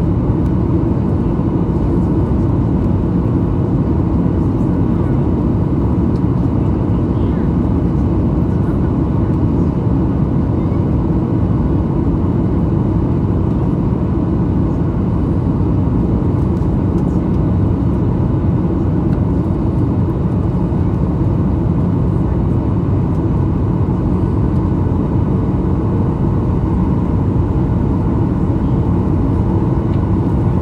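Jet airliner cabin noise heard from a window seat beside the engine on the descent to landing: the engine and rushing airflow as a steady, deep, unbroken noise.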